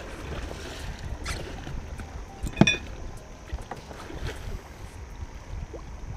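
Water lapping against a small boat's hull, with a low wind rumble on the microphone. Scattered clicks and knocks run through it, the loudest a sharp knock about two and a half seconds in.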